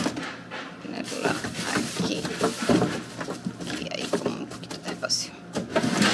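Plastic produce bags rustling and vegetables being handled as green onions are pushed into a refrigerator's plastic crisper drawer, with indistinct voice-like sounds mixed in.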